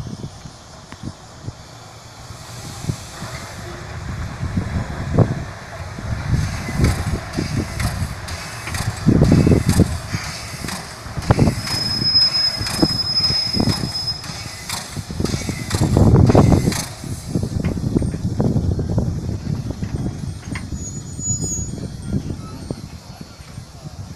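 The C62 2 steam locomotive passes close at low speed, its sound growing as it comes near: heavy puffs of exhaust every second or two over hissing steam. A thin high squeal runs for about three seconds in the middle, and the loudest puffs come near the end as the engine draws level.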